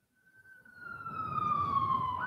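An emergency-vehicle siren starting up and sliding slowly down in pitch in one long wail, over a low rumble like traffic.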